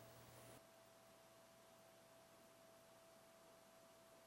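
Near silence: faint room tone with a faint steady tone underneath, the room noise dropping away about half a second in.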